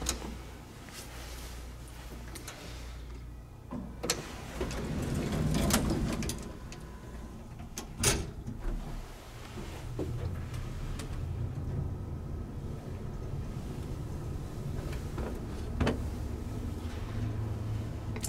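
Otis elevator car travelling, its machinery heard from inside the car as a steady low hum, with a louder rush about five to six seconds in and a few sharp clicks along the way.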